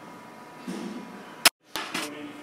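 Low room tone with a brief low rustle about two-thirds of a second in, then a sharp click and a moment of dead silence where the recording is spliced, with two smaller clicks just after.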